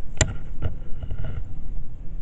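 Low, uneven rumble of strong wind buffeting the car, with a sharp click near the start and a fainter one half a second later.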